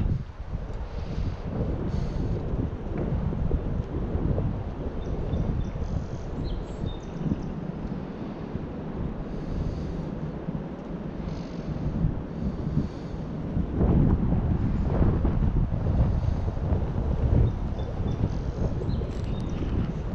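Wind buffeting the microphone in uneven gusts, swelling louder about two-thirds of the way through.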